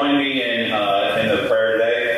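A group of people singing together in unison, with held notes. The singing fades out just after the end.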